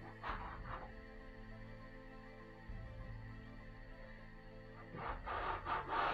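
Metal bench scraper scraping through rolled-out pastry dough against the work surface in two short strokes, one about half a second in and one near the end, over background music.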